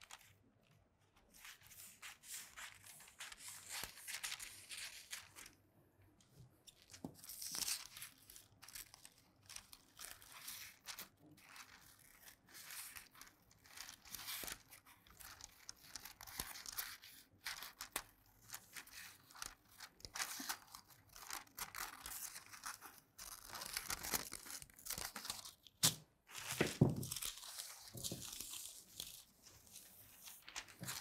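Tailor's shears cutting through pattern paper in a run of short, uneven snips, with the paper rustling as it is turned. A louder burst of paper handling comes near the end.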